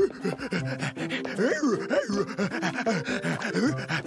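A cartoon voice actor doing rapid, voiced, dog-like panting, imitating an excited dog (Odie).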